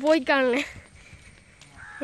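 A high-pitched voice speaks a short phrase for about the first half-second, then only faint background hiss.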